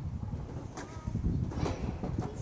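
Outdoor ambience: a steady low wind rumble on the microphone, with a few faint short high calls about a second in and near the end.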